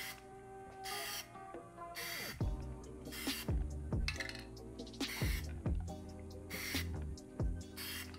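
Background music with a drum beat, over short hissing bursts of an aerosol Plasti Dip can sprayed in even strokes, about one a second.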